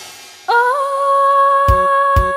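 Gospel choir music. The preceding phrase fades out, then about half a second in a single high note is held steadily. A low, pulsing bass beat comes in near the end.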